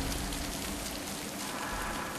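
Steady hiss of heavy falling water splashing onto a wet floor, like downpouring rain.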